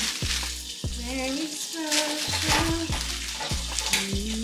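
Crackle of cellophane flower wrapping being handled, over background music with a sung melody and deep bass notes that drop in pitch.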